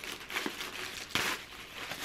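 White tissue paper in a gift box rustling and crinkling as it is lifted and folded back by hand, with one louder rustle a little after a second in.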